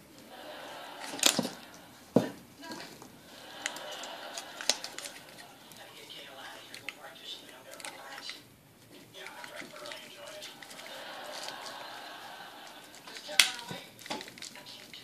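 Sharp clicks and knocks of a quick-release battery tray on an RC helicopter being worked by hand: a pair about a second in and a louder one near the end. Muffled voices talk in the background throughout.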